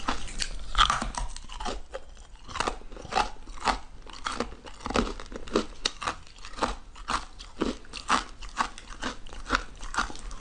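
Hard ice being bitten and chewed close to the mouth: sharp crunches about two a second, the loudest about a second in.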